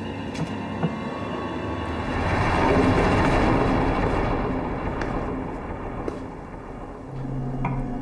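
A low rumbling swell of noise builds about two seconds in and dies away over the next few seconds. Near the end comes a light clink of glassware.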